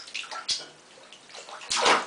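Bathwater sloshing around a child moving in a bathtub, with a short click about half a second in and a louder splash near the end.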